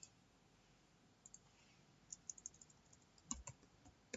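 Faint computer keyboard typing and mouse clicks: a few isolated clicks, then a quick run of light key presses about two seconds in, with a few louder clicks near the end.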